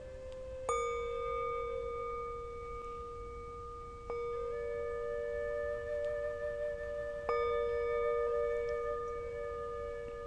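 Meditation bell struck three times, about three seconds apart, each strike ringing on with a long, slowly fading tone.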